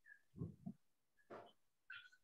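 Near silence: room tone with a few faint, short sounds, two close together about half a second in and another two later.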